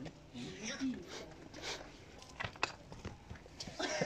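Quiet, indistinct talking from people close by, with a few sharp clicks a little past the middle.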